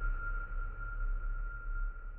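Ringing tail of a closing logo sting: one high, steady tone held over a deep low rumble, slowly fading.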